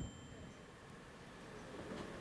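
Faint room tone: a low, even hiss with no distinct sound, while the video being played on the projector gives no audible sound.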